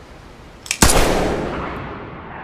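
A single gunshot about a second in, preceded by a short click, with a long echoing tail that fades slowly.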